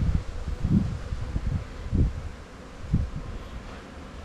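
Wind buffeting the microphone in irregular low rumbling gusts, the strongest at about one, two and three seconds in.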